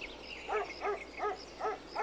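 A cartoon sound effect: a quick run of short pitched calls, each rising then falling, evenly spaced at about two and a half a second, like small yaps.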